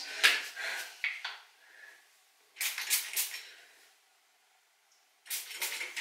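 Plastic pump-spray bottle of hair treatment being pumped in a few short rounds of clicks and hissy spurts, with a pause in between. The bottle is almost empty, so little comes out.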